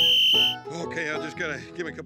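A whistle is blown once: a short, steady, high blast of about half a second. Voices and music follow it.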